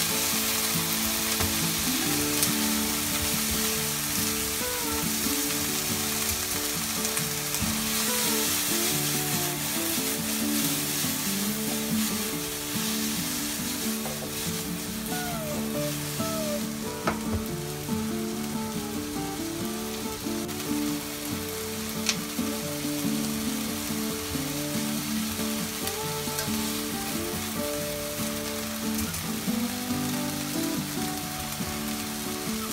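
Chicken thigh pieces with diced onion and scallion sizzling in rendered chicken fat in a nonstick frying pan as they are stir-fried: a steady frying hiss with stirring, and a couple of sharp clicks of the utensil against the pan.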